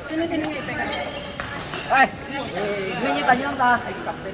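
Several people talking and chatting in a large indoor hall, with a loud call of "hei" about two seconds in.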